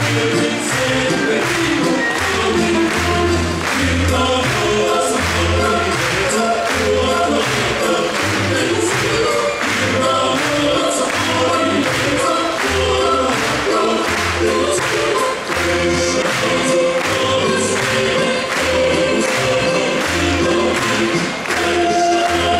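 A choir singing a Latvian song over instrumental accompaniment with a steady beat.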